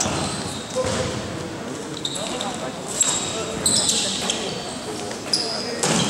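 Basketball bouncing on a gym floor during a game, with short high squeaks from sneakers and voices in the hall.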